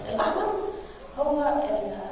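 A person speaking, in short phrases with brief pauses.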